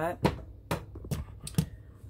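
A handful of light, sharp clicks and taps at uneven spacing, about six in two seconds, with two close together near the middle.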